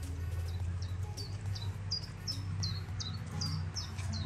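A small bird calling a steady series of short, sharp high notes, about three a second, each dropping quickly in pitch, over a steady low hum.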